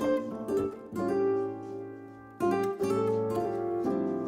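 Instrumental background music of plucked strings, with a few notes struck and left ringing over sustained chords.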